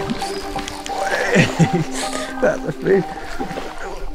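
Excited wordless shouts and exclamations from an angler, starting about a second in, as a chub takes his surface lure.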